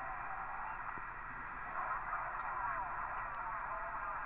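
Ham International Concorde II CB radio's speaker giving out faint receiver hiss, thin and narrow in tone, with faint wavering traces of a weak signal coming through.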